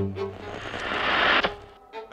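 Trailer sound design: a sudden low boom, then a rush of noise that swells louder for over a second and cuts off abruptly.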